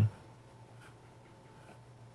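A pause in speech: faint room tone with a low steady hum, after a man's voice cuts off at the very start.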